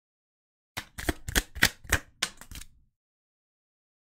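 Tarot cards being handled on a tabletop: a quick run of about nine sharp clicks and taps over two seconds, starting just under a second in.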